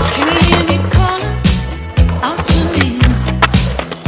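A music track with a steady bass line, with skateboard sounds under it: urethane wheels rolling on concrete and sharp board clacks and impacts, one loud one about halfway through.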